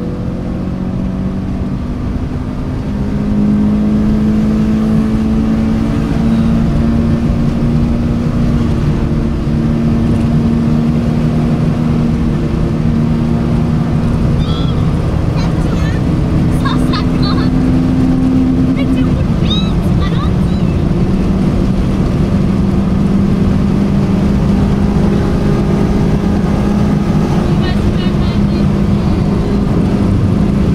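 In-cabin sound of a 1988 Peugeot 405 Mi16's 16-valve four-cylinder engine running steadily at motorway speed, with tyre and road noise underneath. The engine gets louder and rises slightly in pitch as it pulls harder about three seconds in, then holds steady.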